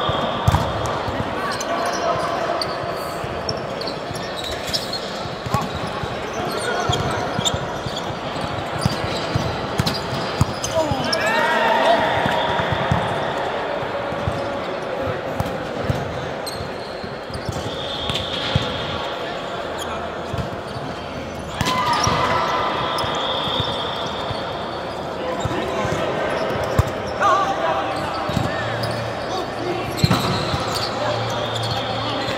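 Indoor volleyball play in a large hall: the ball being struck and bouncing on the court, sneakers squeaking, and players calling out.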